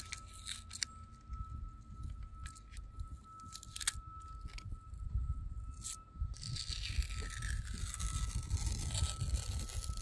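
Blue painter's tape being peeled off a painted metal bus roof from around fresh sealant, crackling and tearing in short pulls with scattered clicks. There is a longer, hissier pull from about six to eight seconds in.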